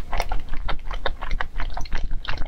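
Close-miked eating sounds: a quick, irregular run of small wet clicks from the mouth, along with a wooden spoon scooping in a glass bowl of soup.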